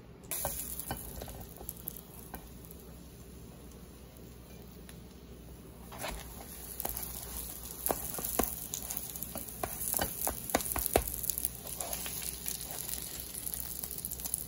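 Chicken quesadilla sizzling in a nonstick frying pan; the sizzle grows louder about six seconds in. A plastic slotted spatula scrapes and clicks against the pan several times as it works under the tortilla.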